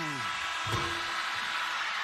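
Arena horn sounding for about two seconds as the game clock hits zero, marking the end of the first half, over crowd noise from the arena.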